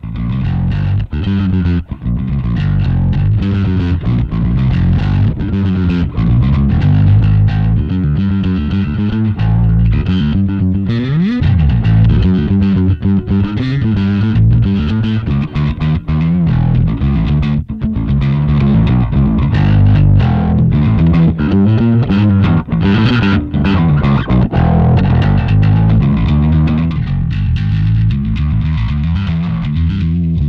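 Electric bass guitar played through a Two Notes Le Bass dual-channel tube preamp pedal in hot mode, a distorted riff with more overdrive, and a note sliding up in pitch about eleven seconds in.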